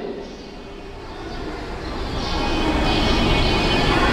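Noise of a passing vehicle, a low rumble growing steadily louder, with a faint high whine over it in the second half.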